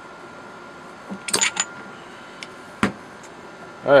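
Metal clinks and knocks as a brass rod pushes the regulator out through the air tube of a Cricket PCP air rifle: a quick cluster of clinks with a brief ring about a second and a half in, then one sharp knock just before three seconds.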